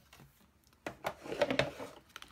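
A sharp click just before a second in, then a short scraping rustle with small clicks: a plastic embossing folder holding a window sheet being handled and slid onto a Big Shot die-cutting machine's platform.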